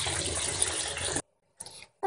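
Bath tap running water into a bathtub, a steady rush that cuts off abruptly a little over a second in.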